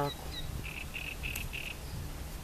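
A wild animal calling: four short, evenly spaced high notes, about three a second, starting about half a second in, over a low steady rumble.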